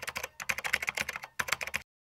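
Computer keyboard typing sound effect: a rapid run of key clicks with two brief gaps, cutting off suddenly near the end.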